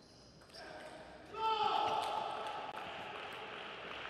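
Table tennis ball hits during a rally, then a loud shout with a falling pitch about a second and a half in, followed by a few seconds of clapping and cheering as the point ends.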